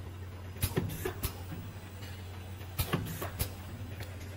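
Automatic bottle filling, capping and labeling line running, with a steady low motor and conveyor hum. Over it come short sharp clacks and hisses in groups of about three, repeating roughly every two seconds as the machine's stations cycle.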